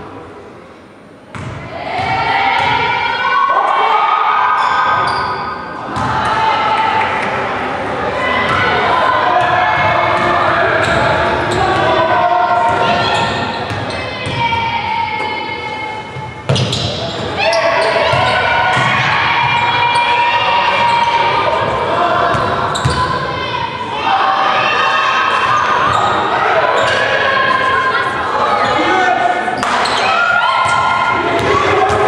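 Indoor basketball game in a large echoing hall: many voices shouting and chanting almost without pause over the thuds of a basketball bouncing on a wooden court. The hall is quieter for about the first second, then the voices rise sharply.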